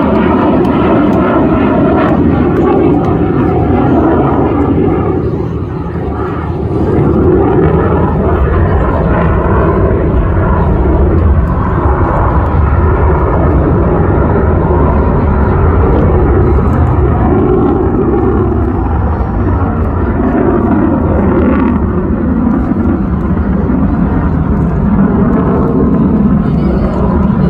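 Fighter jet's engine noise as it flies high overhead: a loud, steady rumble that dips briefly about five seconds in, then holds.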